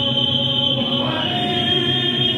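A large group of people singing a song together in unison, holding long notes, with the pitch moving to a new note about a second in.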